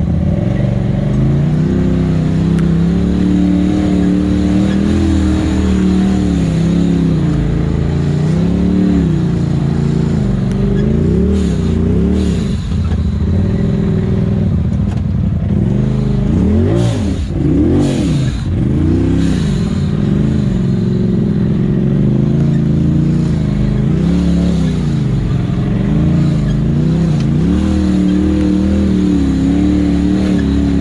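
Polaris RZR side-by-side's engine revving up and down under throttle as it crawls over rock, with several quick rising and falling throttle blips about halfway through. A few sharp knocks are heard among the revs.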